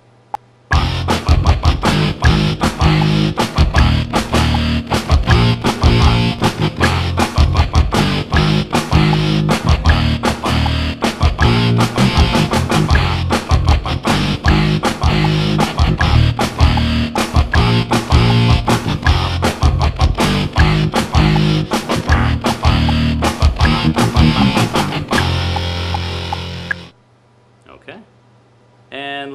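Rock backing track from the Voice Band iPhone app, in which sung notes become instruments: distorted power-chord guitar and bass play back while kick and snare drums, triggered by the voice (quieter notes give the kick, louder ones the snare), are laid down in time with them. The music starts just under a second in and cuts off about a second before the end.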